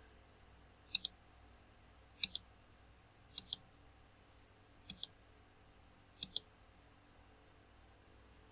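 Computer mouse button clicked five times, roughly every second and a half. Each click is a quick double sound as the button is pressed and released, over a faint low hum.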